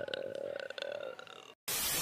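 A man's drawn-out "uhh" of dismay, held for about a second and a half and then cut off suddenly, followed by a short burst of hissing noise near the end.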